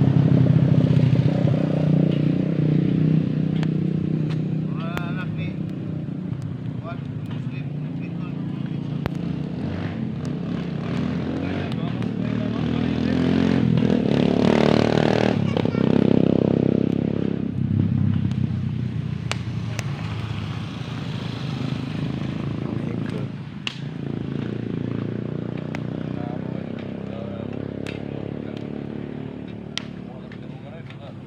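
A motor vehicle's engine running, with one passing by about halfway through, getting louder and then dropping in pitch as it goes; people's voices in the background.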